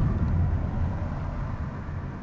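Car on the move: a steady low rumble of engine and road noise, easing slightly over the two seconds.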